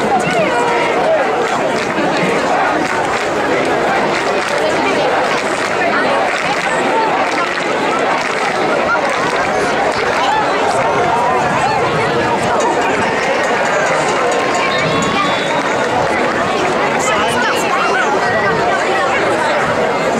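Football crowd in the stands: many voices talking and shouting over one another at a steady level, with no single voice standing out.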